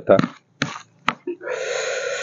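The end of a spoken word, a click, then about a second of steady breathy hiss from the man eating, a long breath drawn or blown through the mouth.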